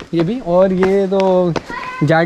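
Speech only: a person's voice, with one long drawn-out syllable in the middle.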